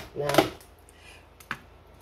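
A woman says a single word, then a quiet pause broken by one sharp light knock about one and a half seconds in.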